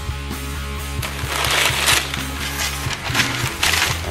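Background music with a steady bass line, over which a styrofoam shipping-box lid is worked loose and lifted off, giving two stretches of rubbing and scraping noise, about a second and a half in and again near three seconds.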